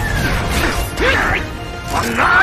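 Sound effects of an animated fight: crashing impacts and swooping pitched sweeps over background music.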